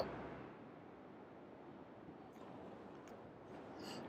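Very quiet background: faint steady hiss of room tone on the narrator's microphone, with a few faint ticks in the second half.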